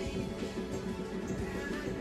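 Traditional Kullu temple band (bajantri) music: a long brass horn's held notes over steady drumming, with a wavering high melody line near the end.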